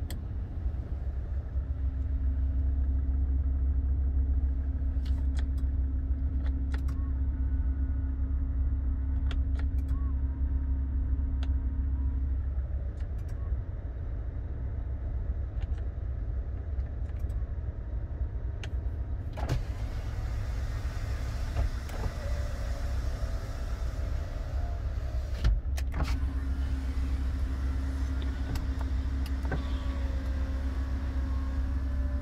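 SsangYong Rexton II power window motor running, heard from inside the cabin. A steady hum runs for about eleven seconds near the start and starts again in the last few seconds, with scattered switch clicks in between.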